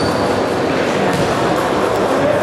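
Steady, reverberant din of a futsal game in a sports hall: indistinct voices and play noise blending into one continuous wash of sound.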